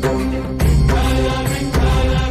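Devotional music: chanted singing over a strong steady bass, with repeated percussion strikes.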